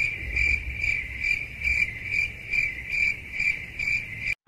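Cricket-chirp sound effect: a steady, even chirp repeating about three times a second, cut in abruptly after the speech stops.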